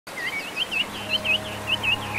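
A bird chirping in a rapid run of short, dipping notes, about six or seven a second. A soft, low music drone comes in underneath about a second in.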